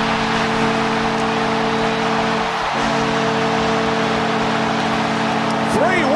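Arena goal horn sounding as a steady chord, with one short break a bit under halfway, over a loud cheering crowd just after a home-team goal.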